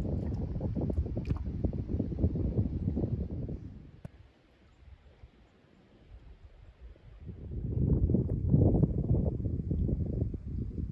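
Uneven low rumble of wind on the microphone and water slapping a canoe's hull on choppy water. It fades almost to nothing about four seconds in and builds back up about three seconds later.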